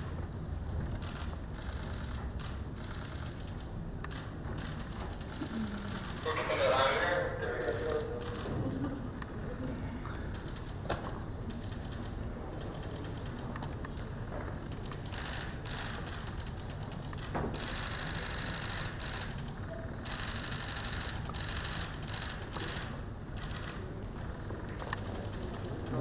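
Press camera shutters clicking in rapid, irregular bursts over a low murmur of voices in a room. A voice rises briefly about six seconds in, and there is one sharper click near the middle.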